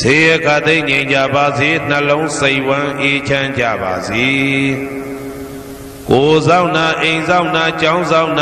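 A man chanting Pali paritta verses in a slow, melodic recitation. A little past the middle a long held note trails off, and the chant picks up again about six seconds in.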